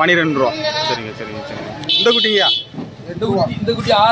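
Men's voices talking, with a goat bleating loudly once about two seconds in.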